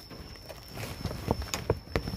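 Handling noise of a phone being moved and set in place against a wire-mesh bird cage and its cloth cover: rustling with a run of sharp taps and knocks from about half a second in.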